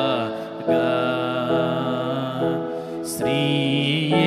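A man singing a slow devotional song in Telugu, holding long drawn-out notes over steady sustained chords. There is a brief break a little after three seconds.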